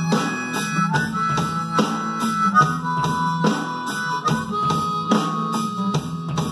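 A harmonica solo over a rock band recording, with a drum kit played along in a steady beat of drum and cymbal hits.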